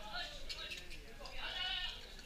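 Voices of a group of people calling out and chattering, with a longer call near the end and a few light clicks about half a second in.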